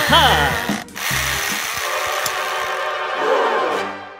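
Steady buzzing of a toy dentist's drill held to a model of teeth, starting about a second in and fading out near the end. A brief sliding, voice-like sound comes just before it.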